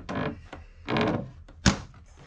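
Handling of a small wooden locker door under a boat's settee: brief rustles, then a single sharp knock near the end as the door is let go or shut.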